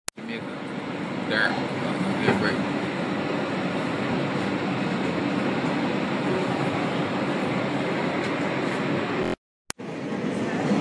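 New York subway train running along the elevated track, a steady rumble heard from inside the car. It cuts off briefly near the end.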